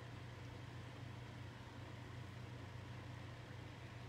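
Steady low hum with a faint even hiss from an electric fan running in a small room.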